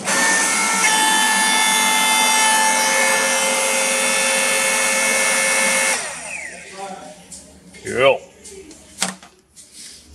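Hydraulic power pack's electric motor and pump starting and running with a steady whine. Just under a second in, the tones change as the time-delayed solenoid valve energises and the pump takes up load. About six seconds in, the motor switches off and runs down with a short falling whine.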